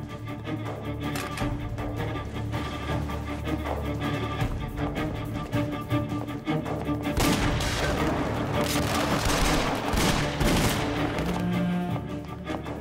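Dramatic background music, joined about seven seconds in by a loud, rapid exchange of gunfire that goes on for several seconds.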